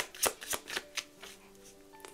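Tarot cards being shuffled by hand: a quick run of card clicks, about four a second, that stops about a second in. Faint soft background music with held notes lies underneath.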